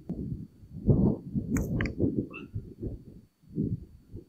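Wind buffeting the microphone in loud, uneven gusts. About a second and a half in, two quick clicks a fifth of a second apart: a golf iron striking the ball twice in one chip stroke, a double hit.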